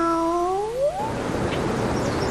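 A long, drawn-out cat meow that sinks in pitch and then rises, ending about a second in, followed by a steady hiss.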